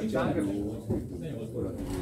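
Indistinct men's voices talking, with one low drawn-out voiced sound, in a hall.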